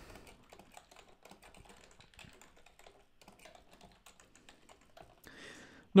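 Typing on a computer keyboard: a quick, uneven run of faint key clicks.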